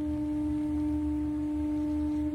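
A steady, pure held tone with faint higher overtones, like a sine tone or singing bowl, sounding over a low rumbling drone in ambient soundtrack music.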